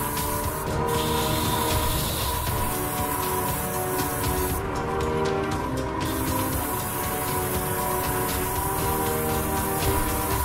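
Background music over the hiss of an airbrush spraying paint. The hiss cuts out briefly just under a second in and again for over a second around the middle.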